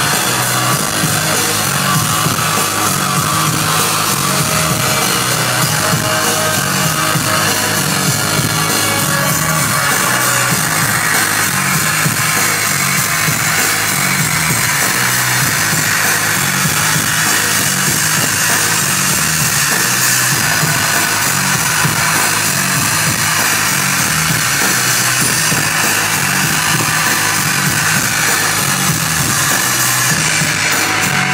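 Live rock band (two guitars and drums) playing loud. A dense wash of distorted guitar sits over a steady, pulsing low beat of drums and bass.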